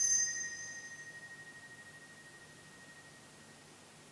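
Small altar bell struck once: a bright ring whose high overtones fade quickly, leaving one clear tone that dies away over about three seconds. It marks the priest's genuflection at the consecration of the Mass.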